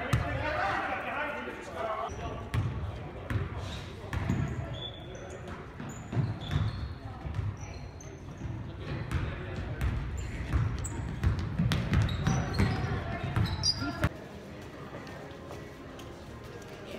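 Basketball game in a school gym: the ball bouncing and thudding on the hardwood court, with scattered short high sneaker squeaks and spectators' voices in a big, echoing hall. The court sounds cut off suddenly shortly before the end.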